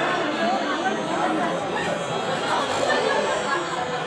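Many people talking at once: a steady wash of overlapping chatter, with no one voice standing out and no music.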